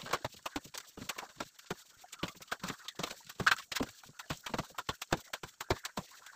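Rapid, irregular clicks and light knocks, several a second, with one louder knock about three and a half seconds in.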